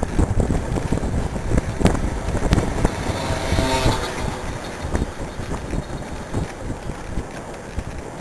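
Wind buffeting the microphone of a camera on a moving road bike, with a steady low rumble and frequent sharp knocks and rattles. A brief tone-like sound comes about three and a half seconds in, and the noise eases off somewhat in the second half.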